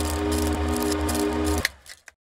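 Intro title-card sound: a held low chord over a low hum and a fast, mechanical-sounding rattle, like a VHS-style static effect. It cuts off suddenly near the end, leaving a brief dip.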